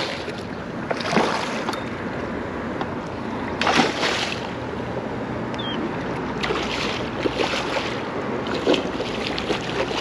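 A large drum on the line, thrashing and splashing at the water's surface, heard as several sharp splashes (the loudest about four seconds in) over a steady wash of wind and water noise.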